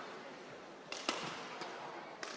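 Badminton rally: a few sharp racket-on-shuttlecock hits, the loudest about a second in, over the steady noise of the hall.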